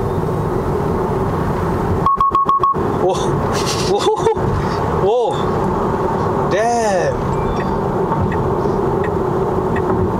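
Cabin noise inside a Tesla Model 3 RWD at highway speed: a steady drone of road and tyre noise with a constant low hum. A brief pulsing tone sounds about two seconds in.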